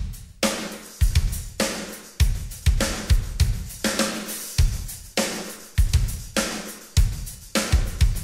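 Acoustic drum kit played with sticks in a rock beat: heavy bass drum and snare strokes with crash cymbal hits, a big hit a little under twice a second, with the cymbals ringing on between strokes.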